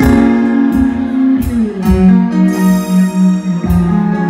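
Live band playing an instrumental passage: sustained keyboard and guitar notes over a few sharp drum hits, with no singing.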